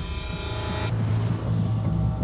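Road traffic: a steady low vehicle engine hum that slowly grows louder. A brighter hissing layer over it cuts off suddenly just under a second in.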